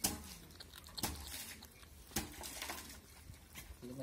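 Young mongooses feeding on dead rats: faint, irregular crunching and clicking as they chew and tear at the carcasses.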